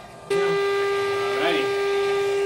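Electronic school bell: one steady pitched tone that starts abruptly about a third of a second in and holds, marking the end of the class period.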